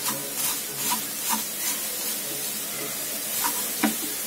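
Wooden spatula stirring and scraping a mixture of grated coconut and jaggery in a non-stick pan: several short scrapes in the first two seconds and two more near the end, the last the loudest, over a steady hiss of the mixture cooking.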